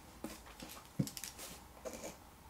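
Faint handling sounds: a few soft clicks and light rustling as a ballpoint pen is picked up from a sheet of paper on a desk.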